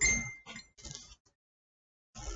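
A pen put down on the desk: a light clink with a brief high ring, followed by two softer knocks.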